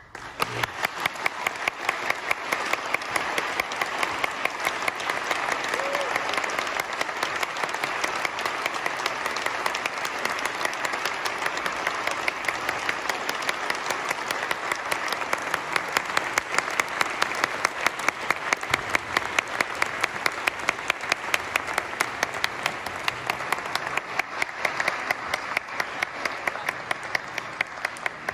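Audience applauding steadily, with one pair of hands clapping close by in a regular beat of about three claps a second, louder than the rest.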